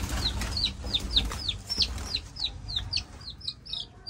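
A young domestic chicken chick peeping in a rapid string of short, falling peeps, about four a second: the distress calls of a chick being chased and caught by hand.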